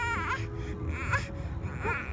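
A young child crying, the wail breaking into short sobbing cries about a second apart.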